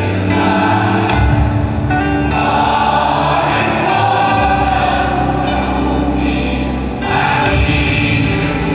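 Large mixed gospel choir singing a sustained, many-voiced chord passage over held low bass notes.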